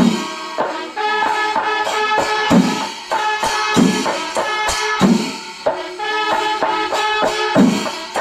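Kerala chenda melam: massed chenda drums and ilathalam hand cymbals playing together, the cymbals ringing continuously under rapid drum strokes, with a heavy beat falling about every one and a quarter seconds.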